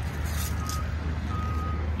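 A vehicle's reversing alarm beeping, two half-second beeps about a second apart, over the steady low rumble of an engine running.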